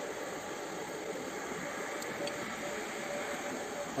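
Steady hiss of a running fan, with a faint thin tone through the middle.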